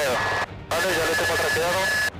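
Crew voices heard over a helicopter headset intercom with a radio-like sound and a steady high-pitched tone underneath. The channel cuts out abruptly for a moment about half a second in.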